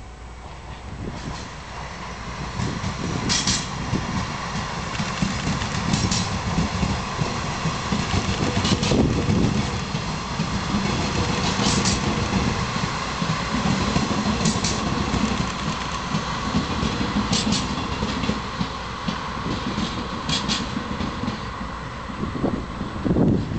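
A slow-moving oversize freight train worked by DD51 diesel-hydraulic locomotives passing, with a low diesel rumble and a steady whine. Wheels click over rail joints in pairs roughly every three seconds, and the sound builds over the first few seconds and then holds.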